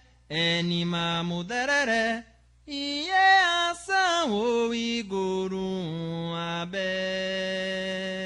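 Unaccompanied Candomblé chant for Oxum, sung in Yoruba: short vocal phrases gliding between held notes, with brief pauses, ending on a long held note.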